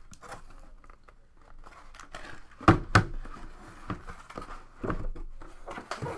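Cardboard shipping case and the boxes inside it being handled: rustling and scraping of cardboard, with two sharp knocks close together about halfway through and a few softer knocks later as boxes are set down on the table.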